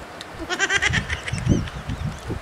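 A person's high-pitched, rapidly wavering vocal sound, like a giggle or squeal, lasting about half a second, followed by a few short low sounds.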